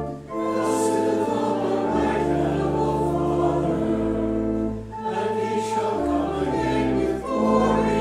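Organ accompanying a congregation singing a hymn: slow, sustained chords over a deep bass line, changing every second or two.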